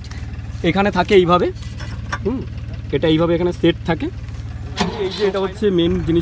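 Diesel engine of a Kubota combine harvester idling with a steady low drone, under a man's talk.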